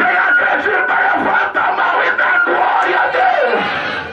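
A preacher shouting into a hand-held microphone through the church PA, loud and without pause. Music and the congregation's voices run behind him.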